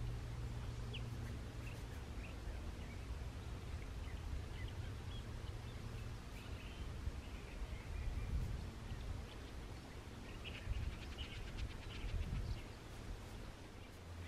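Outdoor ambience of faint, scattered short bird chirps over a low steady rumble.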